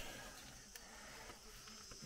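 Near silence in the tunnel: a faint steady hiss with a couple of soft clicks.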